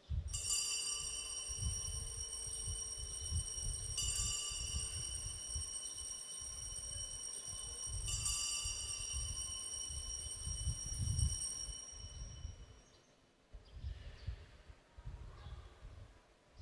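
Altar bell rung three times at the elevation of the consecrated host, one strike about every four seconds, each ring sustained and dying away, over an uneven low rumble.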